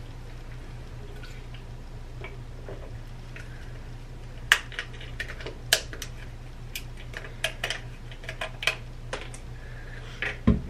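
Plastic cap of a cough-syrup bottle being twisted open by hand: an irregular run of sharp clicks and ticks over about five seconds, starting about four and a half seconds in.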